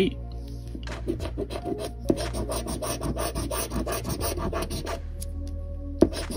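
A coin scratching the coating off a scratch-off lottery ticket in quick, repeated strokes, pausing about five seconds in.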